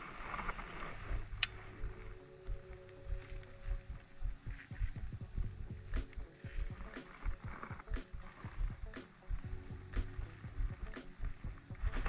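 Baitcasting reel being cranked to retrieve a lure, giving irregular small clicks and ticks throughout, with low wind bumps on the microphone.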